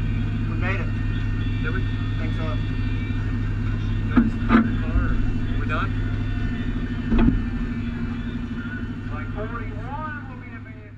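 Demolition derby car's engine idling steadily, heard from inside the car, with a few sharp knocks about halfway through.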